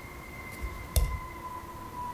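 A single dull thump about a second in, as an aikido partner is taken off balance on the mat, over a faint steady high-pitched hum.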